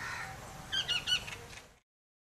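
Three or four short, high bird chirps in quick succession about halfway in, over faint background hiss; then the sound fades out to silence.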